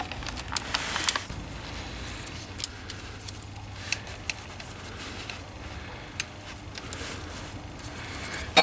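Scattered small clicks and rattles of a plastic O2 sensor wiring connector and a hand tool being handled and fitted to a bracket, over a steady low hum.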